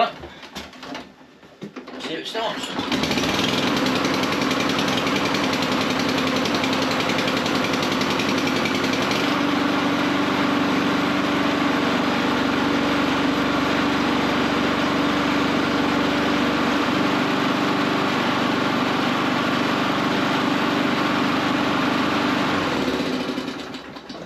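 Petrol lawn mower engine pull-started from cold, catching about two and a half seconds in and then running steadily. It cuts out shortly before the end.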